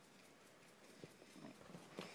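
Near silence. From about a second in there are faint small sounds, a soft tap and a few quiet snuffles, from a yellow Labrador puppy moving about on a fabric couch.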